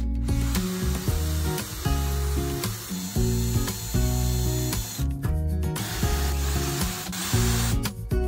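Cordless drill boring into the end grain of a sawn log slice, running in two stretches with a brief stop about five seconds in, over acoustic guitar background music.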